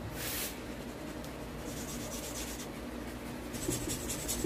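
Light scratching and rubbing on Gunpla plastic kit parts being worked by hand, in three short spells: one at the start, one in the middle and one near the end.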